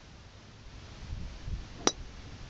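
A golf driver striking a ball off the tee once near the end: a single sharp click with a short metallic ring.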